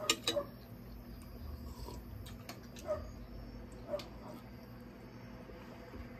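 Close-miked mouth sounds of eating and drinking: a couple of gulps from a cup right at the start, then scattered soft clicks and smacks of chewing and swallowing.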